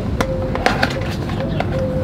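Cardboard medicine box being handled and opened by hand, with a few sharp clicks and crinkles in the first second and lighter handling noises after.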